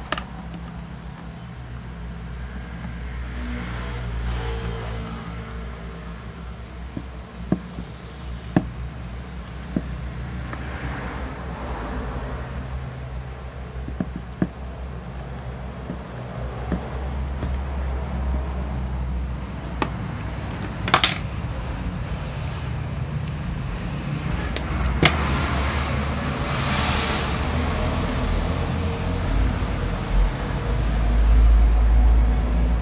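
Steady low rumble of road traffic that swells as vehicles pass, with scattered sharp clicks and small taps from wires and a plastic connector being handled and twisted together.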